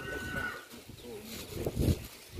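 Faint calls of domestic fowl, with a steady high note for about the first half second. Under them is the rustle of steps on dry grass.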